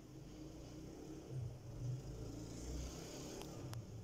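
Faint low rumble that swells a little about a second and a half in and again near three seconds, with two faint ticks near the end.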